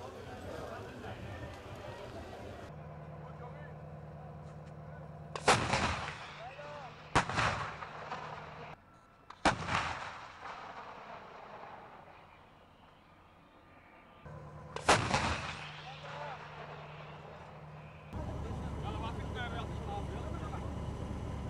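Four heavy explosive blasts, each trailing off in a long rumble. Three come about two seconds apart, and a fourth follows after a gap of about five seconds.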